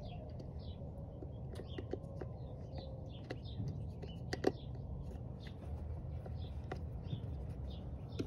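Scattered light clicks and taps of a mass airflow sensor and its small screw being fitted by hand, with one sharper click about four and a half seconds in. Birds chirp faintly over a low steady rumble.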